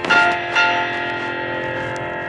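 Bells struck twice, near the start and about half a second later, each ringing on with a long, slowly fading tone.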